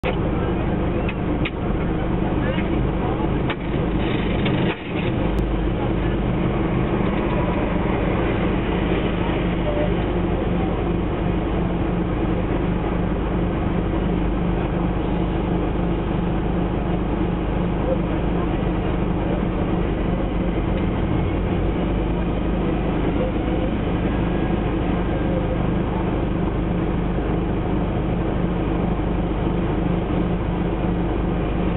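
Steady low hum of a stationary car's engine idling, heard from inside the cabin, with indistinct voices mixed in. There are a couple of brief clicks in the first few seconds.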